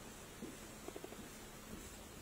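Faint short strokes of a dry-erase marker writing letters on a whiteboard.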